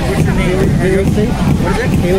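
Crowd babble: many people talking at once, no single voice clear, over a steady low rumble.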